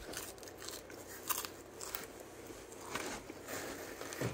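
A person biting and chewing a slice of thin-crust cheese pizza: a series of short, crisp crunches from the crust, the loudest a little over a second in.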